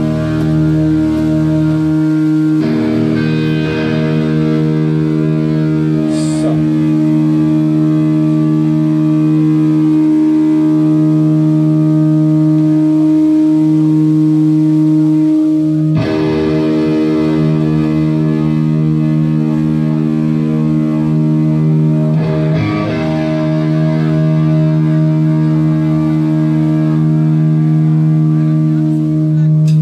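Live rock band's distorted electric guitars holding long, sustained chords that ring steadily, with the chord struck afresh about halfway through.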